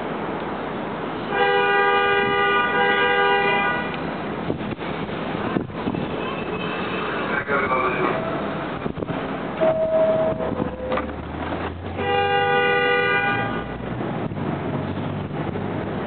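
A New York City subway train's horn sounds two long, steady blasts: one of about two and a half seconds near the start and another about ten seconds later. Between them a two-note door chime sounds, high then low, as the doors are about to close.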